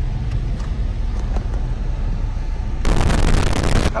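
Steady low rumble of a car cabin on the move. About three seconds in, a loud rushing burst of noise lasts about a second and cuts off suddenly.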